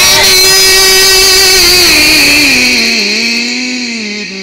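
A male Quran reciter holding one long melodic note in the drawn-out mujawwad style, closing the phrase 'wa kadhalika najzi al-muhsinin'. The note holds steady, then slides down in pitch in two steps past the halfway point and fades near the end.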